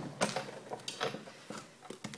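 Hand-cranked Sizzix Big Shot embossing machine being turned, its rollers drawing the plate and embossing-folder sandwich through, with a series of irregular clicks and knocks.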